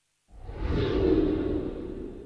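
Whoosh sound effect for a TV show's logo transition, swelling in about a third of a second in, then fading away.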